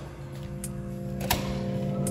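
Background music with sustained notes and light percussive hits, with one sharper tap a little past halfway through.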